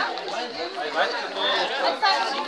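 Several people talking at once: overlapping conversational chatter of a small group, with no single voice standing out.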